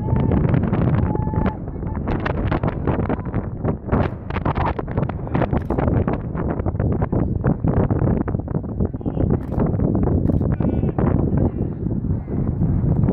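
Wind buffeting the microphone in a steady rough rumble, with indistinct voices in the background.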